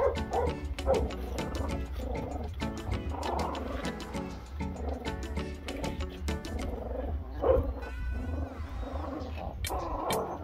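Seven-week-old pit bull puppies growling in bursts as they bite and tug at a cloth, over background music with a steady low beat.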